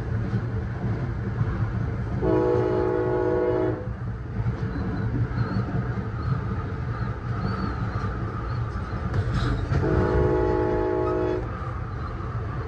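Passenger train running with a steady low rumble, its horn sounding two blasts of a few tones each, about a second and a half long, about two seconds in and again about ten seconds in.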